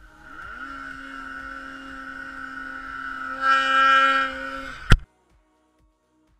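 Arctic Cat M8 snowmobile's two-stroke twin engine revving up and then holding one steady pitch under throttle, getting louder about three and a half seconds in. It cuts off abruptly with a sharp click near the end.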